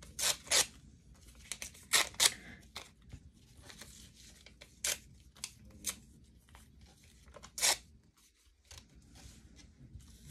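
A magazine page being torn by hand into small pieces: a run of short, sharp rips at irregular intervals, with a few louder ones near the start, around two seconds in and near the end.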